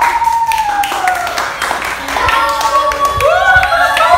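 Several girls calling out in long, drawn-out voices, with many hand claps throughout; more voices join in near the end.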